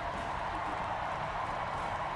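Large convention-hall crowd cheering and applauding, a steady roar of voices and clapping.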